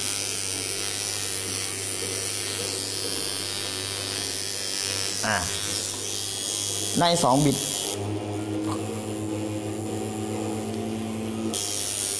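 A tattoo machine running with a steady low buzz as it packs solid colour into practice skin. The hum comes through more clearly over the last few seconds.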